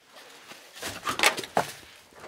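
A person blowing hard into a snowmobile's fuel tank, a breathy rush of air that grows louder through the middle, pressurising the tank to push fuel to the carburettor and prime the engine.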